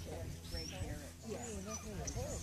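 Faint voices of people talking nearby, with a dog whining and yipping at the start of an agility run.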